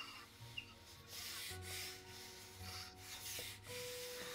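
Faint rubbing and scraping as a long black plastic pipe is handled against hands and clothing, in several short spells.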